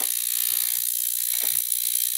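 Small generic ultrasonic cleaner running: a steady, high-pitched buzz from the transducer vibrating its water-filled metal tank, agitating the water to loosen stuck ink from a fountain pen. The sound is harsh and not pleasant.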